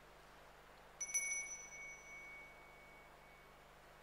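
Altar bell struck once, about a second in, with a quick double strike. Its clear high ring fades out over about two seconds.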